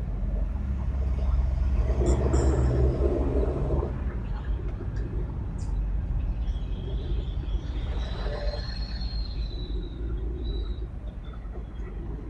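Steady low rumble of a car and the surrounding city traffic on a busy downtown street. A faint high whine rises and falls about halfway through.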